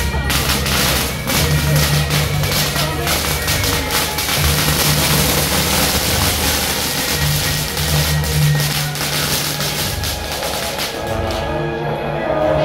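A long string of firecrackers going off in a rapid, continuous crackle that stops near the end, with music playing underneath.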